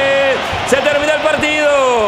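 Male sports commentator's voice with no clear words: a long held shout cuts off about a third of a second in, then comes a run of drawn-out calls that slide down in pitch.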